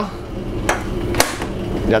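Two sharp plastic knocks, about half a second apart and the second the louder, as the lid of a Thermomix is unlatched and lifted off its jug after blending, over a low steady hum.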